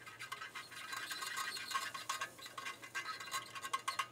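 Flux and soft solder crackling and spitting irregularly as a heavy-duty soldering gun's tip melts solder into a stainless-steel-to-brass joint, under a faint steady low hum.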